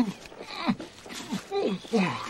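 A man's voice making several short, low vocal sounds, each falling in pitch, with no clear words.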